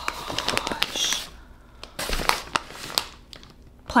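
Packing paper crinkling and rustling as hands rummage through a box of paper-wrapped plants. The crinkles come in irregular bursts, busiest in the first second and again about two seconds in.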